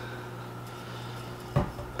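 A glass whiskey bottle set down on a tabletop with a single dull thud about a second and a half in, after a quiet stretch with a steady low hum.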